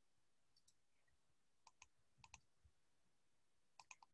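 Near silence broken by faint computer mouse clicks, several coming as quick double clicks.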